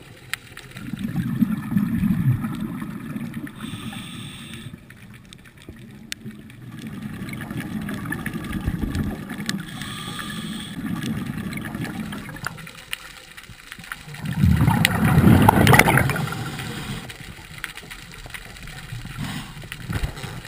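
Muffled underwater gurgling and rumbling of a scuba diver's exhaled bubbles and water moving past the camera housing, coming in waves, with the loudest gush of bubbles about fifteen seconds in.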